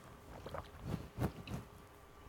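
Faint chewing and mouth sounds, a few short soft crunches, as a man chews a mouthful of Calms Forte homeopathic tablets.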